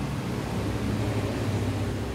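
Mercedes-Benz E280's M272 V6 engine idling steadily, a low even hum heard inside the car's cabin.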